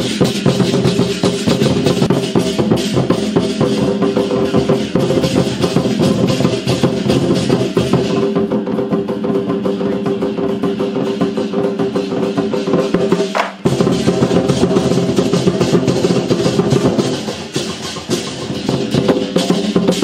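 Troupe of large Chinese barrel drums beaten in a fast, continuous rhythm, with a ringing sustain beneath the strokes. The drumming breaks off for a moment about two-thirds of the way through.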